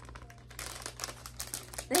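Thin clear plastic zip bag crinkling and crackling as it is handled and opened, a quick run of small crackles that starts about half a second in.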